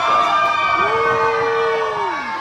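A group of people yelling long, drawn-out cheers together; a lower voice joins about a second in and holds one steady note to the end.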